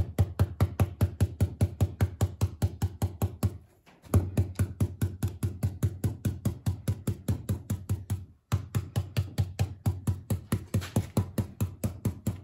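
A round stencil brush pounced rapidly up and down through a mylar stencil onto a fabric pillow case, dry-brushing paint: a steady run of soft taps about six or seven a second. The tapping stops briefly twice, about four seconds in and again around eight and a half seconds in.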